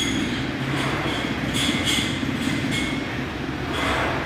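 Loaded Smith machine bar running up and down its guide rails during incline bench press reps: a steady rumble with light metallic clinks.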